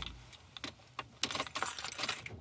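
Small hard pieces clicking and rattling: a few scattered clicks, then a quick dense run of rattling clicks in the second half.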